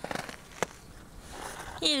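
A dog chewing snow: a few quick crunches at the start and one sharp crunch about half a second in, then faint chewing noise.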